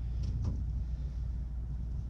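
A steady low background hum, with a couple of faint, brief rustles about half a second in as a crocheted baby blanket is handled and unfolded.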